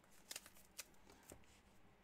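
Faint rustling and tapping of a stack of trading cards being handled, with a few brief card-on-card brushes about half a second apart.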